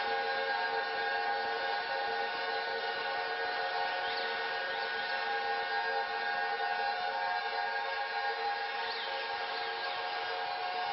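Eurorack modular synthesizer drone through a Make Noise Mimeophon delay: a dense, steady chord of many held tones. Faint short high chirps sweep past about four seconds in and again near the end.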